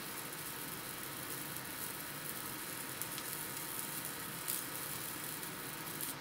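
Steady hiss from a 20-watt MOPA fiber laser marker at work, its beam marking a quartz-and-epoxy composite stone, with a small tick about four and a half seconds in.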